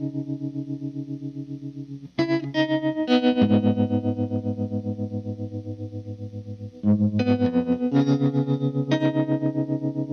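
Solo electric guitar through effects playing the opening chords of a song. Each chord rings on with a fast, even pulsing, about seven pulses a second, and new chords are struck about two, three, seven and eight seconds in.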